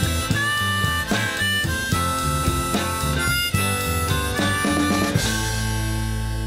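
Live rock band playing: electric guitars and drums under a lead line of held, slightly bending high notes. About five seconds in the drumming stops and a final chord rings out.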